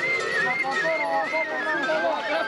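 Folk melody played high on a shepherd's pipe, a single wavering line full of quick trills, over voices and crowd noise.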